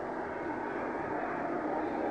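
A pause in a man's talk filled with steady, low background noise and a faint hum, the hiss and hum of an old live recording.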